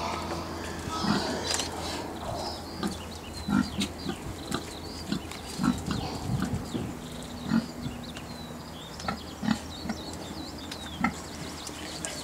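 Domestic fattening pigs grunting, short low grunts coming irregularly, a dozen or so.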